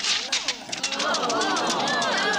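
A film projector clattering with rapid, regular clicks as the film breaks and the picture goes dark. About a second in, an audience breaks into overlapping voices of dismay.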